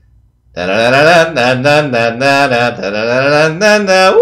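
A man's voice singing a melody without words, the pitch stepping up and down through a short tune, starting about half a second in after a brief silence.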